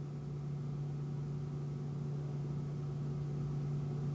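A steady low electrical hum, one constant tone with fainter overtones, that does not change.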